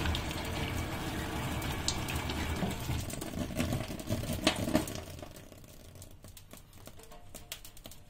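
Dry ice bubbling and fizzing in water, the fizzing dying down about five seconds in and leaving a run of small, irregular crackles and pops.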